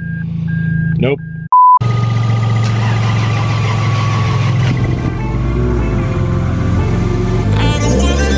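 A car's warning chime beeps repeatedly over a low hum. A loud, short electronic beep then cuts in, and after it the 1JZ inline-six of the Nissan S13 runs steadily, just jump-started after sitting for over a week. Music comes in about five seconds in and takes over near the end.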